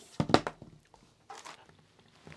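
Handling knocks and clicks of a black plastic power-supply case on a workbench: a sharp cluster about a quarter second in, then a few softer taps about a second and a half in.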